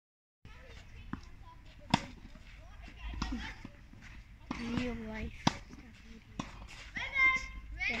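Tennis balls struck by racquets: sharp pops, the loudest about two seconds in and again about five and a half seconds in, with a few fainter ones.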